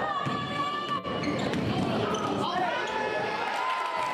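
A basketball bouncing on a gym's wooden court among the voices of players and spectators, with a sharp knock about a second in.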